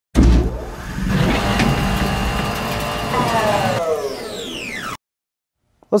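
A loud vehicle engine sound that starts suddenly, its pitch falling away over the last two seconds, then cut off abruptly about five seconds in, followed by a moment of silence.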